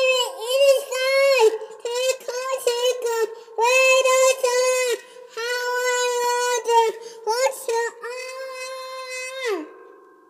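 A toddler singing in a high voice, phrases of long held notes with short breaks between them; the last note slides down and stops near the end.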